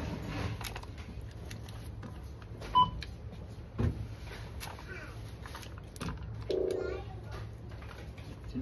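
Supermarket checkout: a short, clear beep from the barcode scanner about three seconds in, a few knocks of items being handled, and a short low tone near the end, over the steady murmur of the store.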